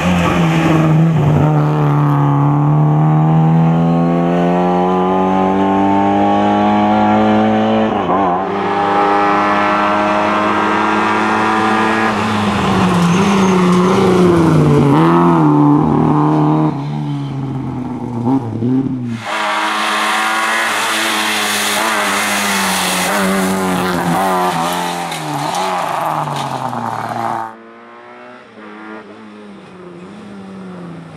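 Lada 2105 rally car's four-cylinder engine driven at full throttle, its note climbing and dropping repeatedly with gear changes and lifts for the corners. Near the end the engine sound falls away sharply.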